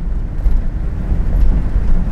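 Steady low rumble of a car driving at speed along a desert track: engine and tyre noise.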